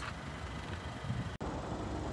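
Faint, steady low background rumble with no clear mechanical rhythm, broken by a sudden brief dropout at an edit about a second and a half in.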